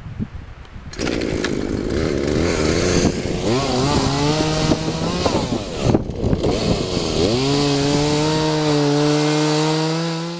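Chainsaw cutting through a fallen log. The engine pitch wavers and sags as the chain works through the wood, drops briefly a little past halfway, then rises and holds high and steady.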